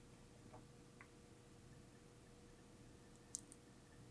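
Near silence: room tone, with one short, sharp click a little over three seconds in and a fainter click just after it.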